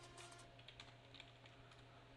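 Faint typing on a computer keyboard: a few soft, scattered key clicks.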